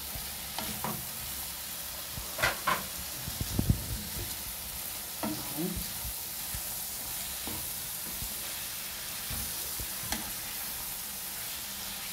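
Liver and chopped peppers sizzling in hot oil in a frying pan, stirred and turned with a wooden spoon. There are a few louder scrapes and knocks against the pan about two to four seconds in, and fewer after that.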